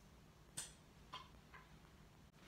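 Near silence: quiet room tone with three faint, short clicks about half a second apart.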